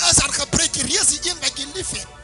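A preacher speaking in a fast, loud, raised-voice burst over background music that holds steady chords.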